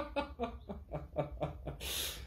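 A man laughing to himself in a run of quick chuckles, about six a second, ending in a short breathy hiss near the end.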